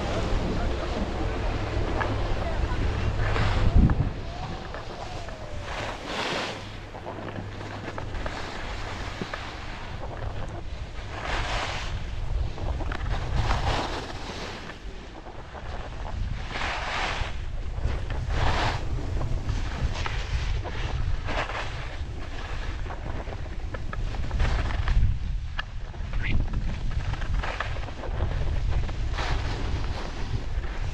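Wind buffeting the microphones of a pole-held 360 action camera while skiing downhill, a heavy low rumble, with a thump about four seconds in. Repeated short hissing scrapes of skis on packed snow come every couple of seconds as the skier turns.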